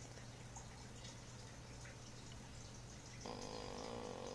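Multimeter continuity tester buzzing once for about a second near the end, a steady flat buzz that signals the probes are touching two points joined by the same trace. Before it, only a low steady hum.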